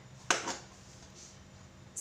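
A single sharp click about a third of a second in, a softer one just after, then quiet room tone.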